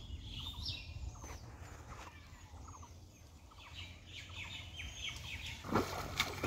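Small birds chirping: short falling chirps and quick trills. Near the end, water splashing as someone starts wading through shallow water.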